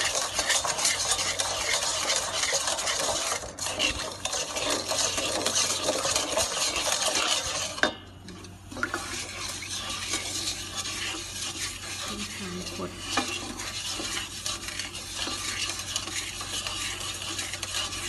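A wooden spatula stirs sugar into a milky liquid in a rice cooker's inner pot, scraping and swishing steadily. About eight seconds in the stirring gets quieter, with a few light knocks of the spatula against the pot.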